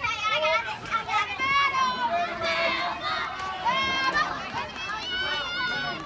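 Young players' high-pitched voices shouting and cheering almost without a break, the kind of loud dugout cheering heard at a youth softball game.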